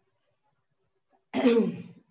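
Near silence, then a person clears their throat once, about a second and a half in, in a short, loud burst.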